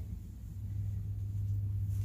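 A steady low background hum, level and unbroken, with no distinct knocks or clicks above it.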